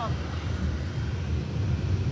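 Steady low rumble of a car's engine and tyres heard from inside the cabin as it drives slowly.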